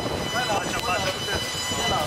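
Indistinct voices of people talking, over a steady haze of background noise.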